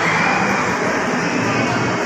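Mall escalator running, a steady mechanical rumble from its moving steps, heard against the hum of a busy mall.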